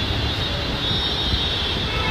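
Steady low rumble and hiss of shop background noise, with no distinct events.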